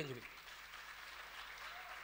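Faint audience applause, an even clapping that fills the pause between sentences.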